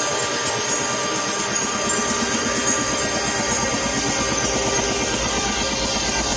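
Electronic trance music: a dense synth passage driven by a fast, even rhythmic pulse.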